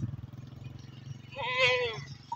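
A Beetal goat bleats once, a short wavering call about a second and a half in.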